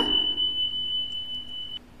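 A steady, high-pitched electronic beep tone that lasts nearly two seconds and then cuts off suddenly.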